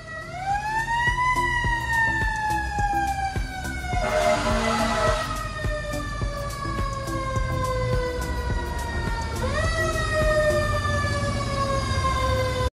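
Fire engine siren heard from inside the cab. The wail winds up in pitch over about a second, slowly falls for several seconds, then winds up again near the end. A short burst of hiss comes about four seconds in, over a low engine rumble.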